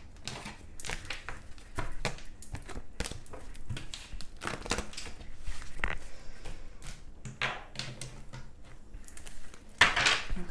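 Tarot cards being picked up and slid across a tabletop and gathered into a stack, with a steady run of irregular light clicks and taps.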